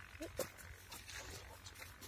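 Faint field ambience with a brief, faint bird call about a quarter second in and a small click just after.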